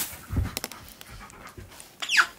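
Husky-malamute dog panting while it plays, with a low thump about half a second in as it pounces and lands on the rug.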